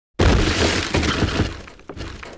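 Shattering sound effect of a block breaking apart. A sudden loud crash comes a moment in and fades over about a second and a half, then a small clink of a falling piece near the end.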